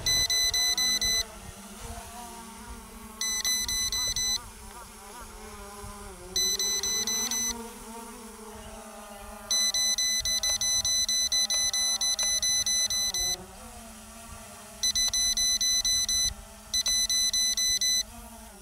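Rapid electronic beeping in bursts of about a second, repeating six times with one longer run of about four seconds in the middle: the KF101 drone's low-battery warning. Under it, the steady buzz of the small quadcopter's propellers hovering close by.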